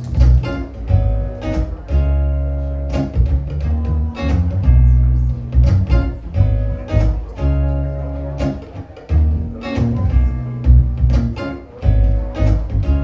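Solo acoustic guitar played live, plucked notes and chords ringing over deep, sustained bass notes, with no singing.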